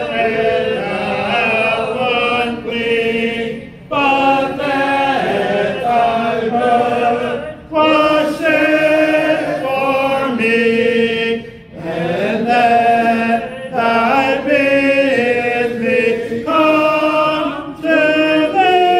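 Church congregation singing an unaccompanied invitation hymn together, in long held phrases with short breaks every few seconds.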